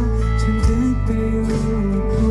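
Live band music played through a festival sound system: electric guitar over steady bass and drums, with a male voice singing.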